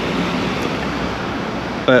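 A steady, even rushing noise with no distinct events, the kind of outdoor background made by wind, traffic or sea.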